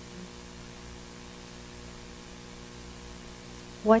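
Steady electrical hum with a faint hiss, held at an even level throughout.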